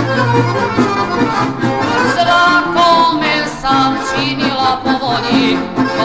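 Folk song with an accordion carrying the melody over a steady bass and rhythm backing, some notes held with a wavering vibrato.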